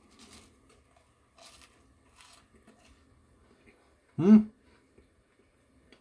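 Faint crunching of toast being chewed in a few short bursts, then a short hummed "hm" with a rising pitch about four seconds in.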